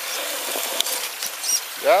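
RC rock crawler's brushed electric motor and gearbox running faintly as the truck climbs over a rock, with a few small clicks and scrapes, over a steady hiss of running water.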